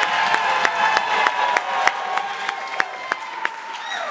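Live beatboxing with an audience: a single held vocal tone that sinks in pitch near the end, over an even beat of sharp hits about three a second, with crowd cheering and applause.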